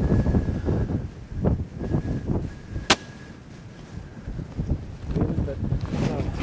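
A single rifle shot about three seconds in, one sharp crack over low rumbling background noise.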